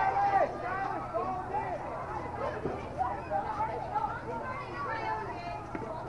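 Several voices talking and calling out at once, overlapping into a babble, over a steady low hum.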